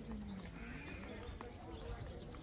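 Footsteps clicking irregularly on cobblestones, with faint voices of people in the background.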